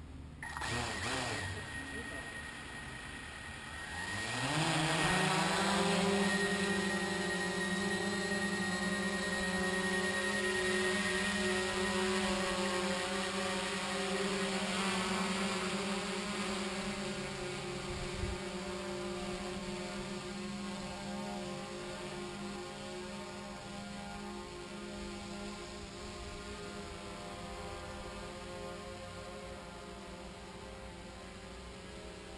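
Small folding quadcopter drone's motors and propellers spinning up with a rising whine about four seconds in, then a steady buzzing hum as it takes off and climbs. The hum slowly fades as the drone gains height.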